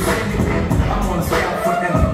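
Hip hop track playing over a sound system: a heavy bass beat with rapped vocals.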